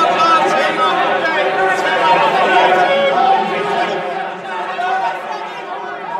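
Many men's voices shouting over one another in open-outcry trading on a metal exchange ring, a dense, loud babble of traders calling their deals.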